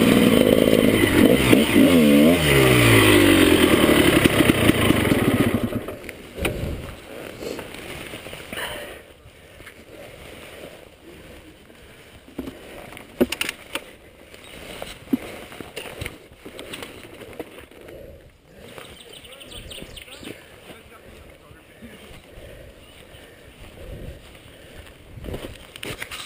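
Gas Gas enduro motorcycle engine revving hard under load on a steep climb, its pitch rising and falling, then cutting out suddenly about six seconds in as the bike goes down on its side. After that there are only scattered knocks and rustles of handling around the fallen bike.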